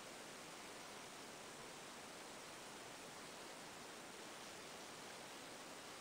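Faint, steady hiss of room tone, close to silence, with no distinct sounds.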